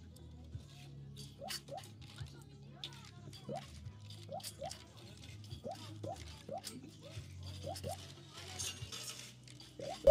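Coin-pusher arcade machine in play: repeated light clicks as tokens drop in, with short chirps, over a steady low machine hum and faint background music.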